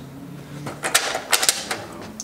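Go stones clicking against each other as a hand picks them out of a box: a quick run of about half a dozen sharp clicks starting about a second in.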